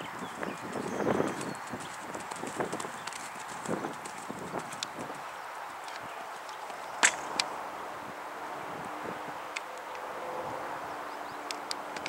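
A pony's hoofbeats on sand arena footing: a run of soft, uneven thuds that fade after about five seconds as it moves away. A sharp knock about seven seconds in, with a smaller one just after, is the loudest sound.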